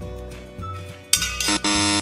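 Soft background music, then about halfway a short hiss-like burst followed by a loud flat buzzer sound effect lasting about half a second: a 'wrong answer' buzzer marking a guess of 'float' for something that sank.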